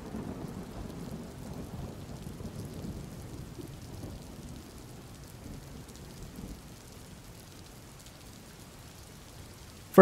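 Rain falling, with a low rumble of thunder that slowly dies away over the first several seconds.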